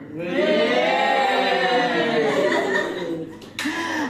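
Several people's voices together in one long drawn-out chorus that rises and then falls in pitch, with a short laugh near the end.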